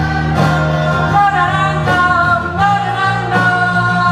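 A pop-rock band playing live: a sung vocal line with held, sliding notes over a steady bass line.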